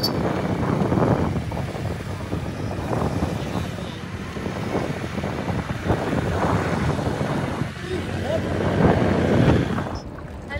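Wind buffeting the microphone in uneven gusts, over the steady rush of river rapids.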